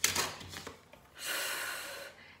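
A brief rustle and clicks as a letter card is picked up. About a second in, a steady breathy "fff" hiss lasting nearly a second: the /f/ letter sound sustained as a phonics cue.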